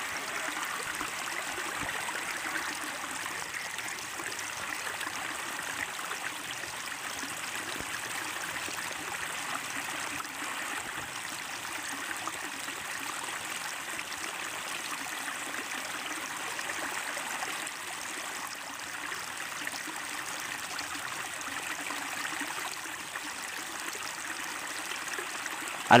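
Steady rushing wind and road noise from riding on a motorbike, with no distinct engine note or impacts standing out.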